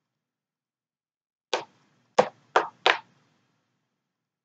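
Tarot cards being put down or tapped on a wooden tabletop: four short knocks, one about a second and a half in and then three quickly after, about a third of a second apart.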